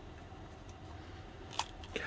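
Quiet room tone with faint handling of a plastic action-figure head in the hands, and a single soft click about one and a half seconds in.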